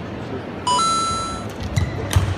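A bright electronic two-note chime: a short lower note steps straight up to a higher ringing note that fades over most of a second. It is an edited-in sound effect marking the caption change. Near the end come a couple of sharp clicks as the rally begins, over steady arena crowd noise.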